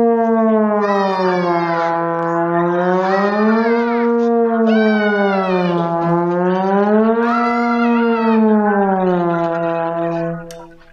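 Trombone playing slide glissandi: one long held note that swoops smoothly down and back up about three times as the slide moves out and in.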